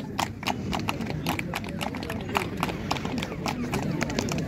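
Scattered hand clapping, several sharp claps a second at an uneven pace, over crowd chatter.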